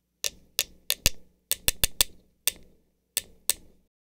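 Telegraph sounder clicking out Morse code: about a dozen sharp mechanical clicks in an uneven, paired rhythm that stops shortly before the end.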